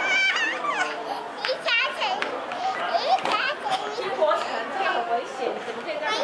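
Young children laughing and squealing with overlapping high-pitched voices as they romp on a pile of plush toys.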